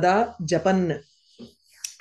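A woman's voice reciting the end of a Sanskrit verse, stopping about a second in; after a short pause a single sharp click sounds just before she speaks again.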